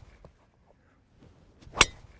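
Driver clubhead striking a teed golf ball: one sharp crack near the end, with a short ringing tail.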